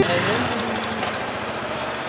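Outdoor street noise: a steady motor-like hum with indistinct voices in the background.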